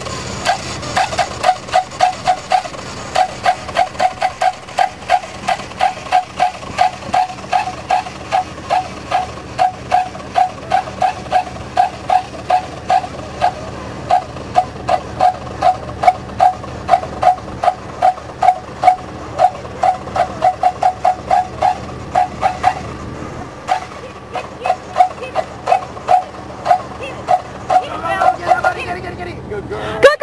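A dog barking over and over in a steady rhythm, about two barks a second, with a short break about three-quarters of the way through.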